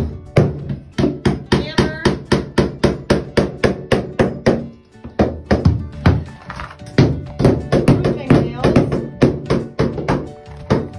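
Hammer driving roofing nails into cement backer board on a floor: a fast, steady run of sharp blows, about three to four a second, with a brief dip in the strokes around the middle.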